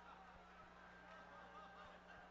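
Near silence: room tone with a steady low hum and faint, distant voices.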